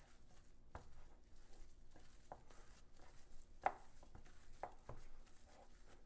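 Gloved hands kneading ground beef with shredded cheese and minced garlic in a glass bowl: faint handling sounds with a few soft clicks, the sharpest about three and a half seconds in.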